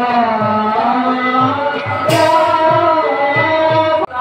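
Bhaona music: a voice singing over a steady drum beat, with one cymbal crash about two seconds in.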